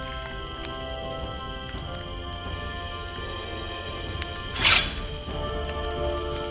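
Film score of sustained, held chords over a low steady drone. About four and a half seconds in, a short loud rush of noise cuts through as a sound effect.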